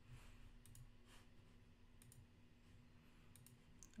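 Near silence with a few faint, scattered computer mouse clicks over a low steady hum.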